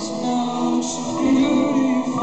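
Live pop-rock band playing a song with sung vocals, recorded from among the audience in a concert hall; the recording is loud and a little bassy.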